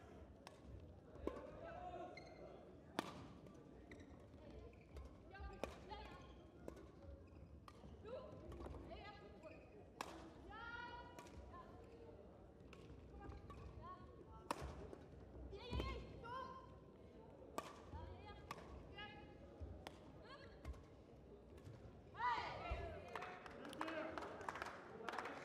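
Badminton rally: rackets hitting the shuttlecock again and again, sharp cracks a second or two apart, with voices calling in the quiet hall and a louder call near the end as the point ends.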